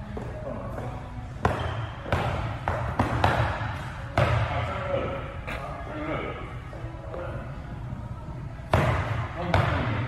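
A basketball bouncing on an indoor hardwood court: a handful of sharp, irregularly spaced bounces, with a few more near the end. Voices sound faintly underneath.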